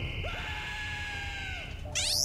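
A steady high electronic buzz, with one long held scream over it that drops away near the end.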